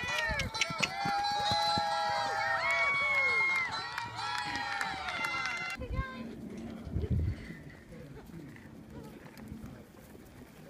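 Music with a singing voice holding long, gliding notes, which cuts off abruptly about six seconds in. Faint outdoor sound follows, with a couple of dull low thumps.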